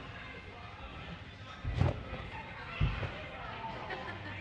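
Two heavy, deep thumps about a second apart: jumpers landing on the bed of a trampoline.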